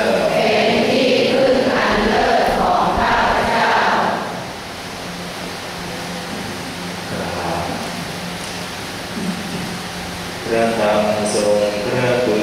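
Buddhist chanting over a hall's microphone, breaking off about four seconds in to a quieter pause with a low steady hum, then resuming on held notes near the end.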